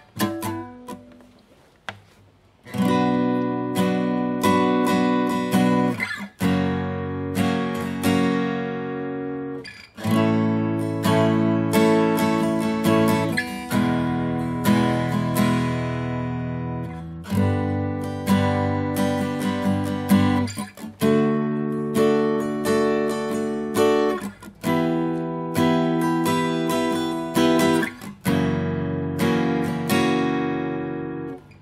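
Yamaha F310 steel-string acoustic guitar, freshly restrung and set up, strummed in chords. The first chord rings out and fades, then strumming resumes about three seconds in and carries on, with brief breaks at the chord changes.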